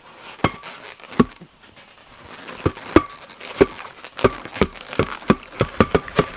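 Inflated latex modelling balloons knocking and squeaking against each other in short taps: a couple of scattered ones at first, then a quickening run of about two to three a second in the second half.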